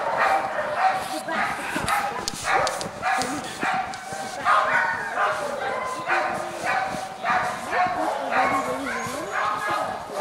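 A chorus of many sled dogs barking, yipping and howling over one another without a break.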